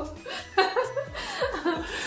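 Two people laughing together in short bursts of chuckling.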